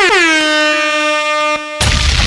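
DJ air-horn sound effect: one long blast that drops in pitch at the start and then holds steady, following a quick stutter of short blasts. It cuts off suddenly near the end into a booming hit with a burst of noise.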